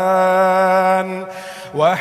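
Male Qur'an reciter chanting Arabic in melodic tajwid style. He holds a long steady note for about a second, takes a short breath, then glides up into the next phrase near the end.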